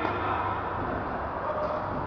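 A tennis racket strikes the ball on a second serve right at the start, a single brief crack, over a steady low hum and hiss.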